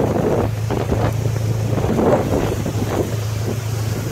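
Strong coastal wind buffeting the microphone in uneven gusts. A steady low hum runs underneath from about half a second in.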